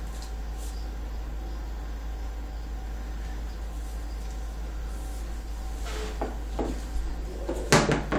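A strung PVC bow is set down on a hardwood floor: a few faint taps about six seconds in, then one sharp knock just before the end, over a steady low hum.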